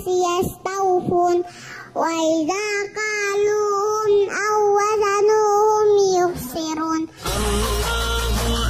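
A young girl reciting the Quran in a melodic chant, in long held phrases with short breaths between them. About seven seconds in it cuts to background music with a steady bass.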